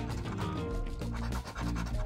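A coin scraping the latex coating off a scratch-off lottery ticket, over background music.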